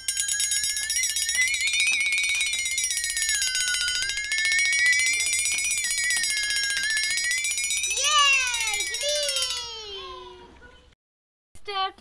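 A loud, high-pitched squeal with a buzzing edge, wavering slowly up and down in pitch for about nine seconds, then breaking into a few falling squeaks that fade out.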